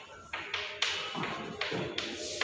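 Chalk writing on a blackboard: a string of sharp taps and short scrapes as the chalk strikes and draws across the board, about two a second.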